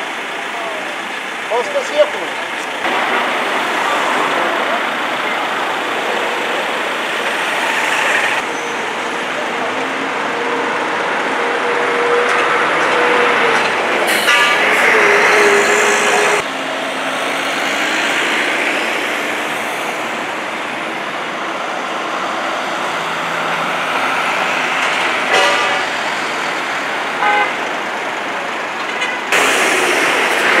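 Street traffic noise: vehicle engines running and passing, with a long steady vehicle horn tone in the middle. The sound cuts abruptly several times.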